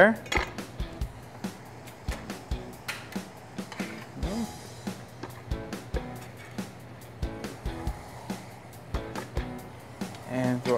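Chef's knife chopping raw bacon on a wooden cutting board: an irregular run of sharp knocks, several a second, with light background music underneath.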